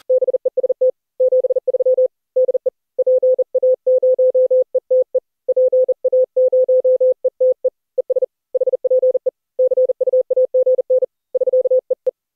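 Morse code: a single tone of about 500 Hz keyed on and off in a rapid pattern of short dots and longer dashes, as a CW station signing off.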